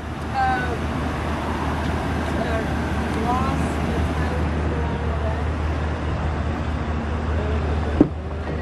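Steady outdoor background noise with a constant low hum, with faint voices in the distance. Right at the end there is a sharp click as a truck's door handle is pulled.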